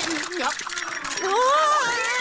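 A cartoon character's voice making wordless sounds that slide up and down in pitch.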